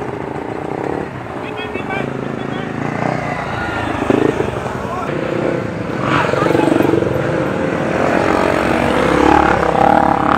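Dirt-bike engines riding past at low speed, their pitch rising and falling as the riders work the throttle, growing louder from about six seconds in as a bike passes close.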